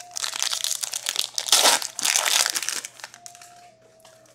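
Foil wrapper of an Upper Deck hockey card pack crinkling as it is torn open by hand, loudest about a second and a half in and dying away near the end.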